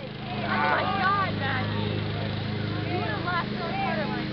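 Several people shouting and calling out across a baseball field, the calls starting about half a second in and continuing in short bursts, over a steady low hum.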